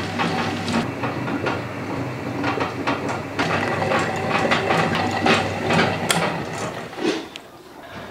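Table-top stone wet grinder running, its stainless steel drum turning green gram batter against the grinding stones. A steady motor hum carries irregular clicking and rattling from the stones. It fades down about seven seconds in.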